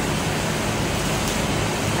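Steady, even rushing background noise with no distinct events in it.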